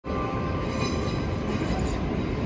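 Steady rumble and hum in a station train hall with NS double-deck electric trains standing at the platforms, with a few faint steady whining tones over it.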